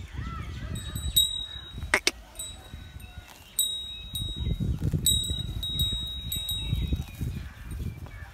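A small metal bell ringing in short jingles, again and again, over a low irregular rustle, with one sharp click about two seconds in.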